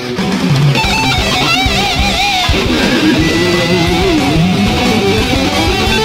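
Distorted electric guitar played through Guitar Rig 5 amp simulation in a heavy metal cover, with long notes that waver in pitch.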